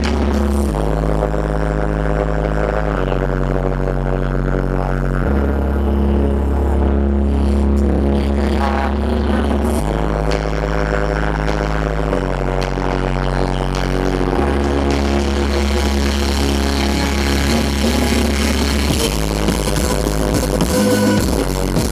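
Live pop music: a woman singing into a handheld microphone over a band, with long held bass notes that change every two to three seconds, heard from the audience through the PA.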